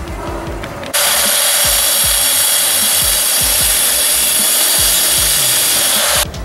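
A power tool cutting through the metal fuse-box bracket: a steady, hissing cutting noise that starts about a second in and stops abruptly at the end. Background music with a steady beat plays underneath.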